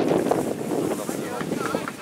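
Several people talking and calling out close to the microphone, a murmur of voices rather than one clear speaker, with wind noise on the microphone.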